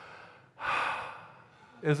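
A man taking a deep breath: a faint inhale, then a long audible sigh out about half a second in that fades away over about a second.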